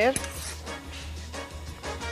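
A few light metallic clinks as a serving spoon scoops thick cheese dip out of a skillet, over a low steady hum.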